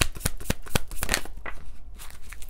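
A deck of tarot cards being shuffled by hand: a quick run of crisp card clicks that thins out near the end.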